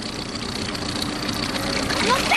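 Boat motor idling with a steady low hum under an even hiss of wind and water.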